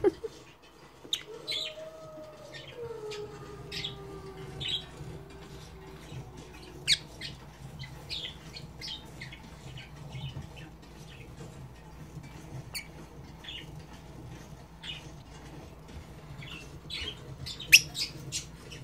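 Rosy-faced lovebird chirping: short, high chirps and squeaks, about one to two a second, with a sharper, louder one about seven seconds in and another near the end.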